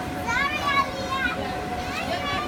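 Young children's high-pitched voices calling out as they play in an inflatable bounce house, over a steady hum from the bounce house's air blower.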